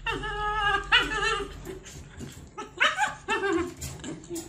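Siberian husky whining in a run of about four drawn-out calls that waver in pitch.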